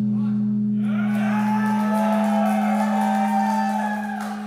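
Amplified electric guitars and bass left ringing through the amps after the band stops playing: a steady low drone, joined about a second in by higher sustained guitar tones that waver and bend in pitch.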